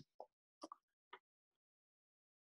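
Near silence, broken by three faint short clicks in the first second or so.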